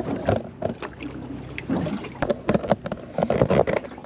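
Handling sounds on a small fishing boat: scattered, irregular knocks and taps, with one sharp click about halfway, over a low steady hum.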